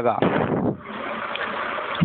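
A steady rushing hiss of background noise, with no tone in it, fills a pause in a man's speech; his last word ends just as it begins.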